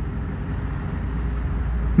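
Low, steady background rumble with a faint hiss, a little stronger in the second second.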